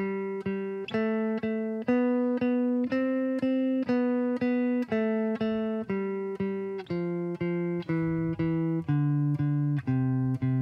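Fender Telecaster electric guitar playing a C major scale, each note picked three times (down, down, up) at about three picks a second. The scale climbs for the first few seconds and then comes back down to the low C.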